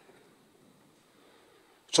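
Near silence: faint room tone during a pause in a man's speech. His voice comes back suddenly near the end, with a sharp attack on the microphone.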